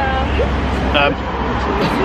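Low engine rumble of a passing road vehicle that fades out near the end, over the chatter of people around.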